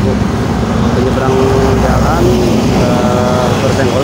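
Several bystanders' voices talking over the steady rumble of passing road traffic.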